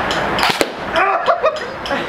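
A single sharp shot from an airsoft rifle about half a second in, followed by brief voices.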